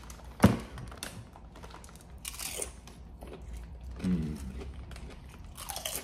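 A man bites into a potato chip topped with pickled pig lip, with a sharp crunch about half a second in, then chews it with soft crunching and crackling. He gives a short hummed 'mm' a little past the middle.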